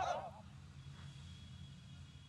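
The last shouted syllable of a man's drill command fades out in a short echo in the first half-second, followed by a faint steady background hum with a thin high whine.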